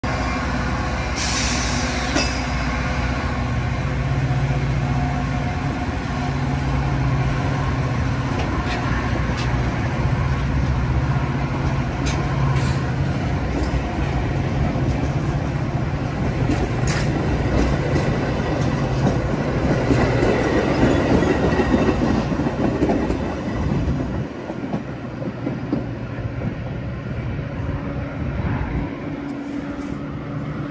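Metra stainless-steel bilevel commuter cars rolling past at close range as the train pulls away, with a steady low rumble and hum and scattered clicks of wheels over the rails. The sound swells about two-thirds of the way through, then drops off suddenly as the last car clears.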